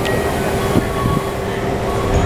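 Keikyu 1500 series electric train heard from inside the passenger car: a steady hum over a low rumble, with two soft knocks about a second in.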